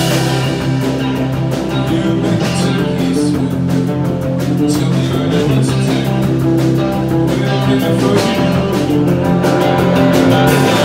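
Live rock band playing: electric guitars and electric bass ringing out sustained chords and notes over a drum kit keeping a steady beat.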